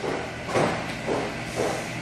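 Shuffling footsteps and soft rubbing as a brass swivel suction tip on a corrugated suction hose is picked up off a concrete floor, in a few soft swells over a steady low hum.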